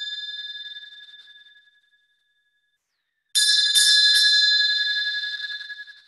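Meditation bell ringing with a clear, high tone: a strike just before rings down and fades out about two seconds in, then after a pause it is struck again three times in quick succession and rings slowly down.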